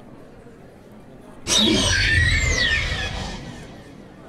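A velociraptor screech, most likely a sound effect: one loud, shrill call starts suddenly about a second and a half in and lasts nearly two seconds. Its pitch slides downward over a low rumble.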